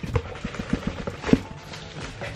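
Cardboard boxes being handled and moved: a quick run of hollow knocks and scrapes, the loudest about a second and a half in.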